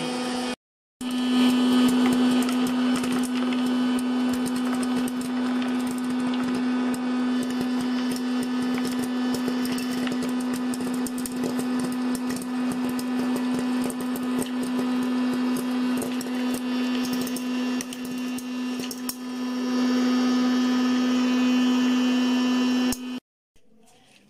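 Electric hot-air popcorn maker running: its fan motor hums steadily, and over it comes a run of light clicks from kernels popping and being blown out of the chute. The sound drops out briefly about a second in and stops shortly before the end.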